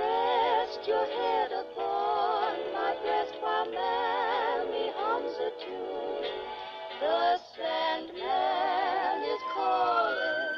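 Vintage dance-orchestra waltz recording playing from a vinyl record on a portable turntable, its melody lines wavering with a wide vibrato.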